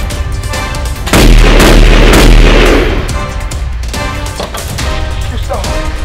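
A single very loud gunshot sound effect over the background score, about a second in, ringing out and dying away over about two seconds.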